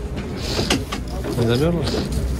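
Outdoor street-market background: a steady low rumble with scattered clicks and hiss, and a nearby voice saying something short and indistinct near the end.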